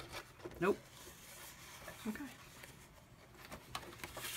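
Faint rustling and sliding of cardstock being handled on a scoring board, with a few soft clicks near the end.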